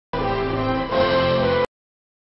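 Documentary background music with sustained tones, broken by abrupt cut-outs into complete silence: a brief gap at the start, then silence from about one and a half seconds in.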